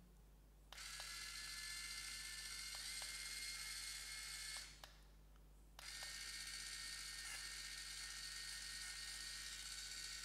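Caresmith Bloom electric callus remover running with its roller spinning freely in the air: a steady high whine. It is switched on about a second in, off a little before halfway, and back on about a second later, with faint button clicks at the switches. The pitch steps up slightly partway through each run.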